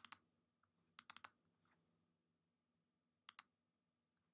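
Faint clicks of a computer mouse: one at the start, a quick run of three or four about a second in, and a double click near the end, with near silence between.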